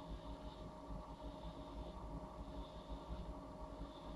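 Quiet room tone: a steady low rumble with a faint, even hum underneath.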